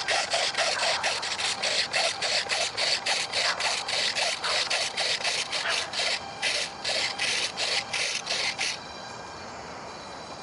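Micro servos on an RC bat-wing jet driving its thrust-vectoring nozzle rapidly back and forth, each stroke a short raspy buzz, about four a second, stopping about nine seconds in.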